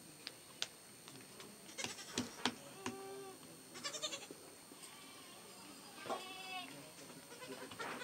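A few light knocks of a wooden rolling pin on a round board. Several short, wavering bleating animal calls are heard at about three, four and six seconds.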